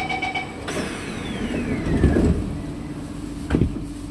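Metro train doors closing at a station: rapid door-closing beeps stop about half a second in, then the sliding passenger doors and platform screen doors run shut with a falling whine. A heavy thud comes about two seconds in as the doors close, and a second, sharper thud comes near the end.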